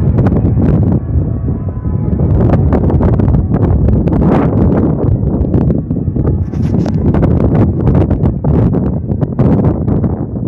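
Loud wind buffeting the microphone in gusts, with frequent crackles and knocks. Church bells ring faintly underneath and fade within the first couple of seconds.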